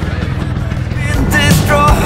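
Motorcycle engine running at low revs. About a second in, music with a melody and a beat comes in over it and becomes the loudest sound.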